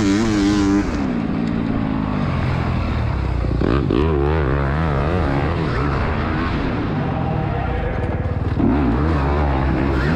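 Dirt bike motors revving up and down while racing over an indoor arenacross track, heard from on board one of the bikes.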